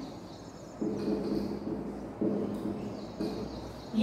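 Felt-tip marker writing on a whiteboard: three short stretches of low, steady stroke sound, each starting abruptly.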